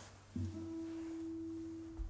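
A single nylon-string classical guitar note, plucked about a third of a second in and left to ring as a steady, pure tone.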